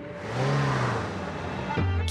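An SUV driving past fast: a rush of tyre and air noise with an engine note that rises and then falls over about a second and a half. A low steady music tone comes in near the end.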